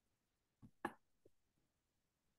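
Near silence with a few faint, sharp clicks: two close together just under a second in and a softer one shortly after.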